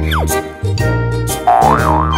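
Cheerful children's background music with steady bass notes, overlaid with a quick falling whistle-like tone near the start and a wavering rising-and-falling tone in the second half.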